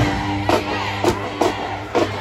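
Marching band music: low brass holding long notes, punctuated by several sharp drum hits.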